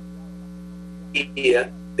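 Steady electrical mains hum on the audio line, a constant low drone; a man's voice starts again a little past a second in.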